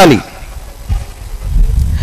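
A man's amplified preaching voice breaks off in a falling tone just as it begins, then a pause holding only a low, steady background rumble.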